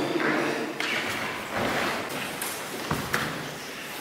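Rustling of cotton aikido uniforms and hakama, with bare feet shifting on foam mats as two people work a partner technique. A soft thud comes about three seconds in.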